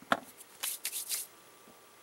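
Hands handling small silicone clay molds on a tabletop. A sharp tap comes just after the start as a mold is set down, then a few short scraping rustles follow around the one-second mark.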